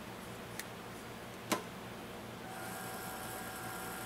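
Quiet handling of shotshell reloading components on a bench. There is a faint click, then a single sharper click about a second and a half in, and a faint steady hum sets in about halfway.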